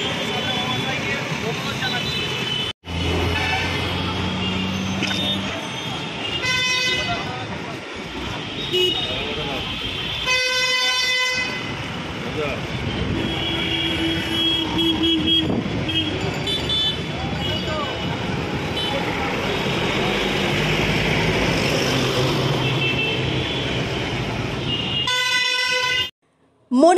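Street noise with many people talking, and vehicle horns honking several times. The longest and loudest honk comes about ten seconds in, and shorter ones come near the start and near the end.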